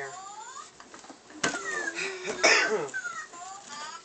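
A person coughs once, loudly, about two and a half seconds in, among several short, thin high squeals that slide up or down in pitch.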